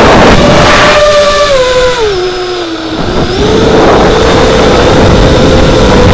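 Brushless motors of a 220-size FPV racing quadcopter (ZMX 2206-2300 on a 4S pack) whining, with propeller and wind noise on the onboard camera's microphone. About a second and a half in, the pitch drops in steps and the sound gets quieter as the throttle is eased off. Just after three seconds it rises again and holds a steady whine.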